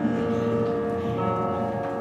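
Small jazz combo playing live: saxophone holding long notes over piano, upright bass and drums.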